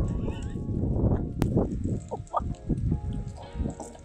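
Farm animal calls, short and pitched, mostly in the second half, over a loud low rumble of wind and handling on the microphone in the first two seconds.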